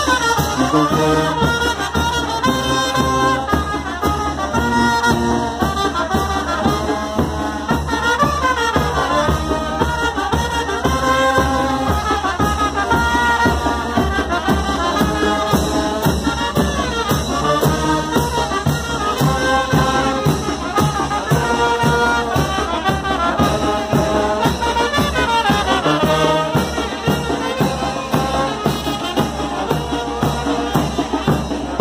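Mexican street brass band playing dance music for chinelos: trumpets and other brass carry the melody over a steady drum-and-cymbal beat.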